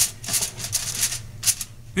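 Aluminium foil crinkling in a quick run of short crackles as it is pressed and crimped down over a baking pan, with a low steady hum underneath.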